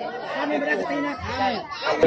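Several people's voices talking over one another, a chatter of speech.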